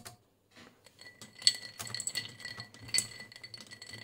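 Ice cubes clinking and rattling against a drinking glass as a temperature sensor probe is stirred through ice water, a run of small sharp clicks starting about a second in.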